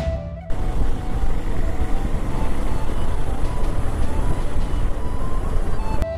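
Background music, then about half a second in a sudden cut to loud, fluttering wind rush and road noise on the microphone of a motorcycle being ridden.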